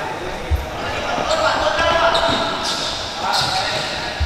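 Futsal ball kicked and bouncing on an indoor sport-tile court, with a sharp thud about half a second in and another knock near the middle, while players' voices call out, echoing in a large hall.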